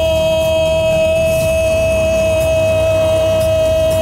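A man's voice holding one long, steady note for about five seconds: the ring announcer stretching out the final syllable of the boxer's name in the fighter introduction.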